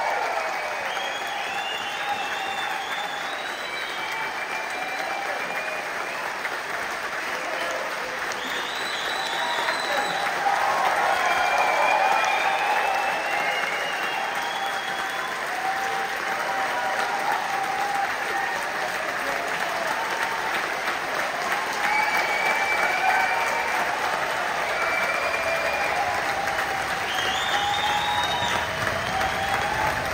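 Theatre audience applauding and cheering after a live rock song has ended, with voices and whistles calling out over steady clapping that swells a little about ten seconds in.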